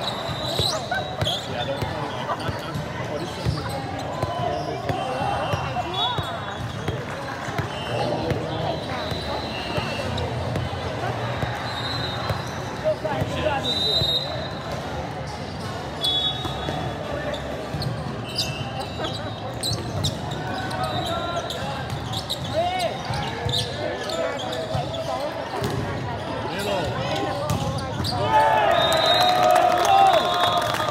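Indoor volleyball play in a large hall: constant chatter of players and spectators, with the thuds of volleyballs being bounced and struck throughout. A louder burst of shouting comes near the end as a rally ends.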